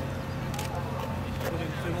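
Steady low rumble of distant fighter jets running on the runway, with a faint steady whine above it and faint voices murmuring.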